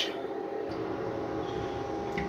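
Miniature toilet being flushed: a faint, low rush of water that starts under a second in and runs on steadily.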